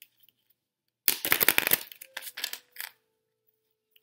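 Tarot cards being handled on a table: a dense patter of crisp clicks and slaps for about a second, starting about a second in, then a few scattered clicks.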